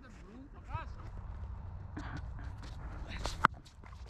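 Steady low rumble with faint, distant shouts of players, then about three and a half seconds in a single sharp crack of a cricket bat striking the ball, sending it high into the air.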